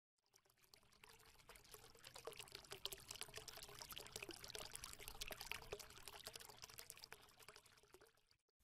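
Faint sound of water pouring, a dense crackle of tiny splashes that swells over the first couple of seconds and fades away near the end.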